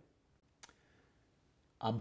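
Near silence with a single short click a little over half a second in; a man's voice starts just before the end.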